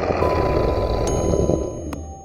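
Sound-designed horror effect: a loud, dense rumbling noise with thin steady electronic tones ringing above it, easing off near the end. It stands in for the Hierophant's wordless answer, which Crimson then repeats as 'not wicked enough'.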